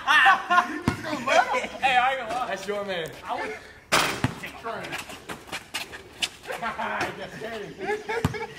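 Basketball game on a concrete driveway: players shout, and the ball bounces and knocks sharply against the hoop, loudest about four seconds in. Near the end the rim and backboard rattle as a player dunks and hangs on the rim.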